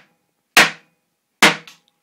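A toddler's hand strikes a drum with a wooden-headed mallet: two sharp single strokes about a second apart, the second followed by a lighter tap.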